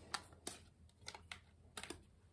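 Faint plastic clicks and taps from cosmetic containers being handled, a mascara tube and a pink compact case, about six irregular clicks over two seconds.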